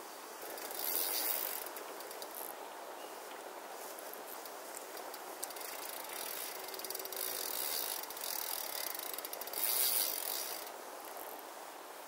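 Fishing reel clicking rapidly in three bursts of one to three seconds each, with the loudest burst near the end. Each burst is a ratchet running as line moves through the reel.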